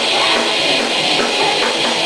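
Live rock band playing loud, with drum kit and electric guitar, in a steady driving rhythm; the low end is thin.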